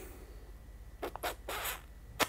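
A few faint, short rustling scrapes about a second in, between stretches of talk.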